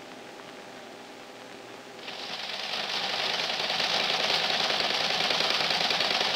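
Faint steady hum, then about two seconds in a teletype terminal starts a fast, steady clatter of typing and printing that builds up and then holds.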